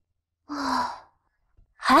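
A woman's short, breathy sigh of relief, its voiced tone falling slightly. Speech begins near the end.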